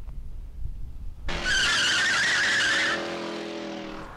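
Car tyres screeching, starting abruptly a little over a second in and lasting about a second and a half, then giving way to a quieter steady pitched tone.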